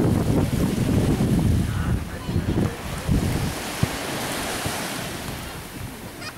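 Wind buffeting the microphone in low, rumbling gusts, loudest in the first two seconds and then easing, over the wash of sea water.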